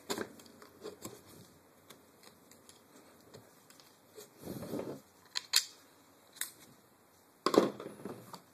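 A screwdriver scraping and clicking against the plastic body of an airsoft MP7 as it is worked, with a rustling scrape about halfway, several sharp clicks after it, and a louder knock near the end.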